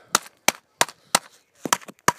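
A hammer pounding a bag of whole coffee beans to crush them into grounds: a run of sharp blows, roughly three a second.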